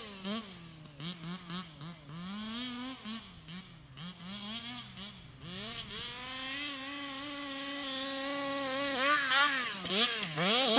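Small two-stroke petrol engine of a large-scale RC buggy buzzing at high revs. The pitch swings up and down in quick throttle stabs for the first several seconds. It then settles into a steadier whine that grows louder, with a couple of sharp drops and rises in revs near the end.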